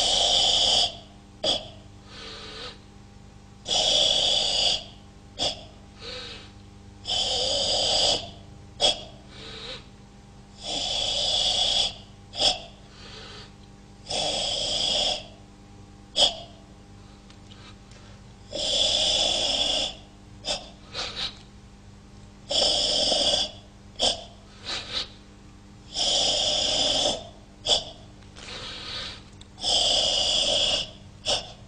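Forceful ibuki breathing of the Kyokushin Sanchin kata: about eight long, hissing breaths, one every three to four seconds, with short sharp sounds between them.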